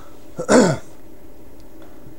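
A man clears his throat once, a short loud rasp that falls in pitch, about half a second in.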